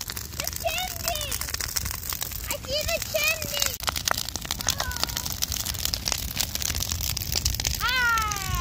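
Bonfire of burning wooden pallets crackling with many quick sharp pops, while children's high voices call out a few times.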